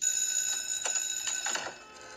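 A bright, high-pitched ringing bell that starts suddenly, holds steady for about a second and a half, then fades.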